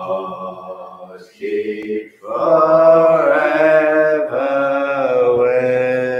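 Unaccompanied singing of a metrical psalm, slow and drawn out, each note held a second or more with short breaks between phrases.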